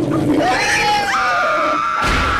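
Cartoon screaming from an angry pig and a frightened girl. A brief low growl at the start gives way to two long overlapping screams, one sliding downward and the other higher and held steady.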